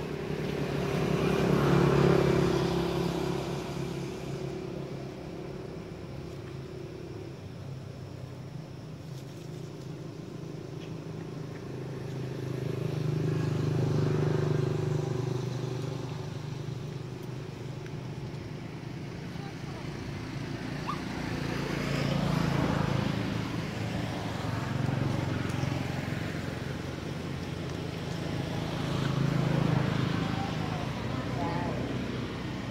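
Motor vehicles passing, their engine noise swelling and fading about four times.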